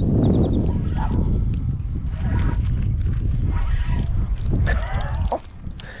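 Wind rumbling on the camera microphone, with handling noise, while a hooked catfish is fought on rod and reel. A short run of high ticks comes right at the start and a few brief voice-like sounds follow later. The rumble drops away about five seconds in.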